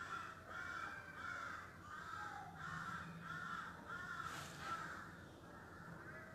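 Faint bird calls repeating steadily, about two a second, each call rising and then falling in pitch.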